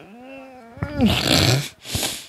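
A woman crying: a wavering, high-pitched sobbing wail in the first second, then a loud ragged breath and a sharp sniff near the end.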